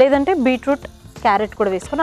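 A woman's voice speaking in two short phrases, over faint background music.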